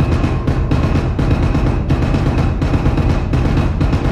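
Loud background music carried by heavy low drums, with frequent percussive hits throughout.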